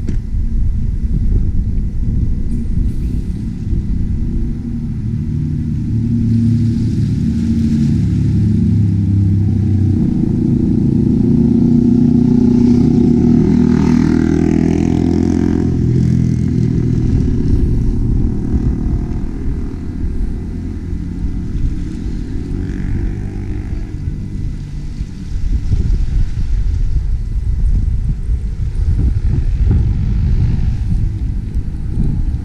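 Road traffic on a waterfront street: a passing vehicle's engine builds to its loudest about 12 to 15 seconds in, then fades, over a steady low rumble.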